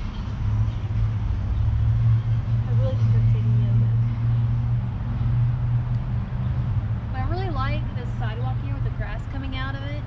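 Steady low rumble of a motor vehicle on the nearby street, loudest in the first half, with indistinct voices in the second half.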